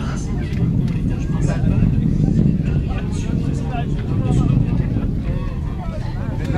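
Ariane 5 rocket's launch noise arriving from a distance: a steady, loud low rumble with scattered crackle from its solid rocket boosters and main engine as it climbs away.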